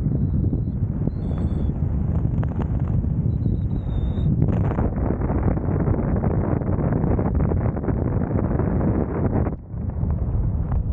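Wind rushing over the microphone of a helmet-mounted camera as the skydiver flies a parachute canopy down to land; it drops away suddenly near the end as he slows to touch down. A few faint, high, thin tones sound in the first few seconds.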